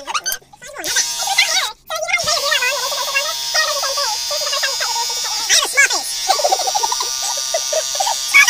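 Electric beard trimmer buzzing steadily as it cuts along the neck, played back sped up, under high-pitched, chipmunk-like sped-up voices. The sound cuts out briefly twice in the first two seconds.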